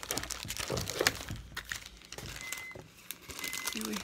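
Clear plastic sticker packages crinkling and crackling as they are handled and shuffled, in irregular bursts, loudest about a second in.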